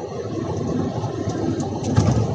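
Steady background noise with a low rumble, carrying no speech.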